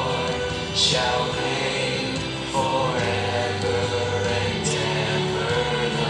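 Christian worship song performed live: a voice singing held, melodic lines into a microphone over musical accompaniment and choir-like backing voices.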